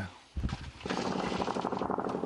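Front-line small-arms fire: a heavy low thump about half a second in, then a long, rapid burst of automatic gunfire lasting about a second and a half.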